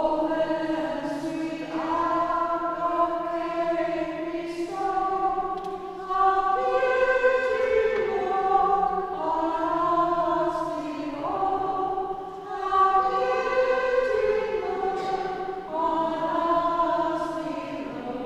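Congregation singing a slow hymn melody in unison, led by a woman's voice, each note held for a second or two.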